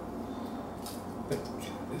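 A few faint, short clicks and taps from handling a gin bottle's freshly pulled cork stopper.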